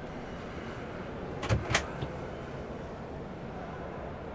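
Two sharp clicks about a second and a half in, with a softer click just after, as a motorhome's overhead locker door is unlatched and swung up on its gas strut. Steady low background noise throughout.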